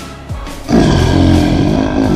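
A lion roaring, loud, starting just under a second in and lasting about a second, laid over background music with a drum beat.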